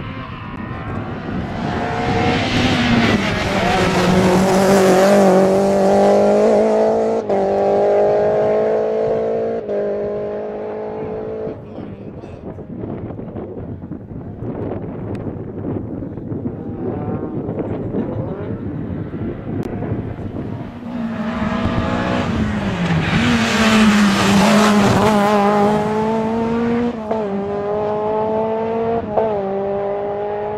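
Two rally cars passing one after the other at full throttle. Each engine revs up hard and steps down in pitch at each upshift, the first car loudest a few seconds in and the second from about twenty seconds in to the end.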